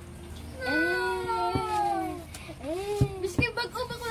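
A child's high-pitched voice making long, drawn-out wordless cries that slide down in pitch, then a shorter rising-and-falling one, breaking into quick chatter near the end. Two sharp taps come about a second and a half apart.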